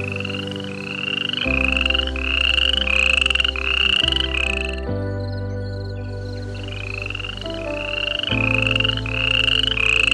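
A repeated rising chirping call, about two notes a second, in two runs with a pause of a couple of seconds between them, over a steady low drone.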